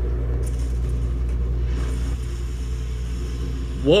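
A steady deep rumble with a faint hiss above it, from a TV drama's soundtrack.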